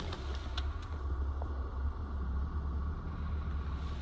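2016 Honda Civic LX's 2.0-litre four-cylinder engine idling in park, a steady low hum heard from inside the cabin.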